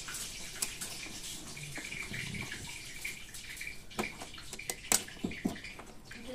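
Small sharp clicks and taps of tweezers working a plastic clip in an Epson ink-tank printer's paper-feed assembly, over a steady background hiss; the loudest clicks come about four and five seconds in.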